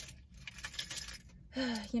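Light clinking and rustling of small handled objects for about a second and a half in a pause of a woman's talk, her speech resuming near the end.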